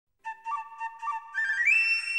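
Flute playing the opening phrase of a theme tune: a few short repeated notes, then a glide up to a long high note.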